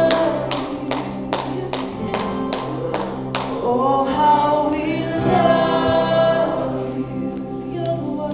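Live worship song: a woman singing into a microphone over acoustic guitar. Sharp rhythmic strokes, about two to three a second, drive the first half, then drop away near the middle, leaving long held sung notes over the chords.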